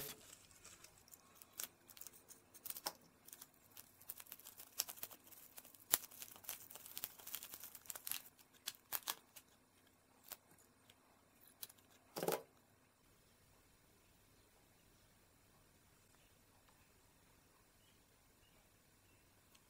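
Plastic bubble wrap crinkling and tearing as it is slit with a utility knife and pulled off a stack of circuit boards: a run of small crackles and clicks over the first nine seconds or so, then one short, louder rustle about twelve seconds in.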